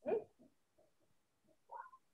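A woman's soft, brief laughter: a short laugh at the start, a few faint breathy pulses, and a short voiced sound near the end, heard through video-call audio that cuts to silence in between.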